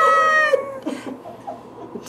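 A woman's high, drawn-out vocal wail, made as a creepy sound effect, held on one note and trailing off about half a second in, followed by a few faint clicks.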